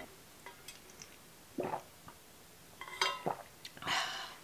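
A person drinking from an insulated metal water bottle: quiet swallows and small clicks, then a short voiced breath out about three seconds in.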